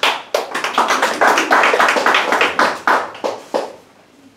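A small audience applauding, with many separate hand claps heard, fading out about three and a half seconds in.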